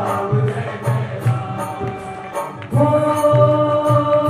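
Hindu devotional chanting sung to music, with a steady drum beat and regular high ticks about two or three times a second; a voice holds a long note from about three-quarters of the way in.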